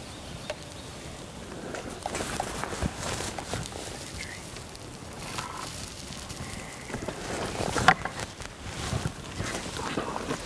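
Black bear moving about the base of a metal ladder tree stand: scattered scrapes, knocks and brush rustling, with a sharp knock about eight seconds in.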